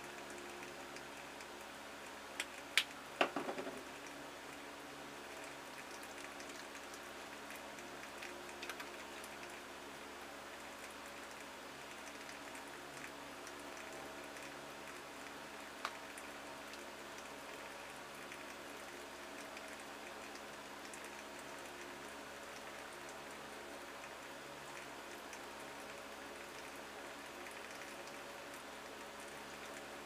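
Quiet room tone with a steady low hum, broken by a few light clicks: two about two to three seconds in, and single soft taps near nine and sixteen seconds.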